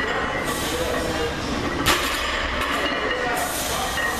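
Loaded barbell set down on the gym floor during deadlift reps: one sharp clank of the plates about two seconds in, over steady gym background noise.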